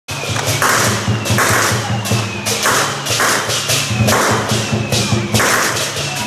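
Temple procession percussion: a drum beating a steady rhythm with repeated cymbal crashes.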